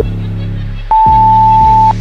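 Workout interval timer beeping over electronic background music with a steady beat: a short lower beep at the start, then a long, louder, higher beep about a second in, lasting about a second, marking the end of one exercise and the start of the next.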